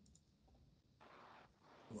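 Near silence on a video call, with a faint short hiss about a second in.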